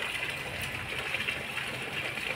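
Steady rain falling onto shallow standing water, an even hiss.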